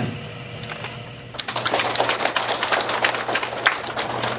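A crowd applauding: a few scattered claps, then dense clapping from about a second and a half in.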